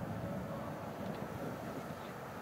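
Distant, steady low rumble of the Avro Vulcan XH558's jet engines as the bomber banks toward the cliffs.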